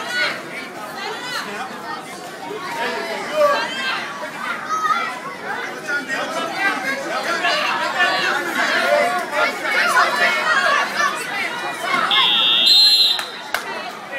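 Spectators and coaches shouting and chattering around a wrestling bout. About twelve seconds in, a high electronic timer buzzer sounds steadily for about a second, marking the end of the period or match.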